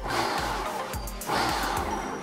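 Food processor pulsed twice, its blade chopping cauliflower florets into rice-sized bits: two noisy bursts of about a second each with a short break between. Background music runs underneath.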